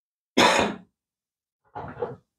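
A woman's short sigh about half a second in, followed near the end by a quieter brief vocal sound.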